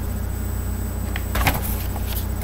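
A sheet of paper rustling and crackling in a short flurry, a little over a second in, as it is handled and lowered, over a steady low hum.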